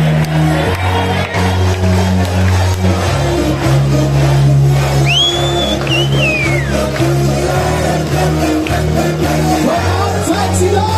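Live band playing loud amplified music, with a deep bass line whose notes change every second or so. About five seconds in, a high sliding call rises and falls over the music for a second or so.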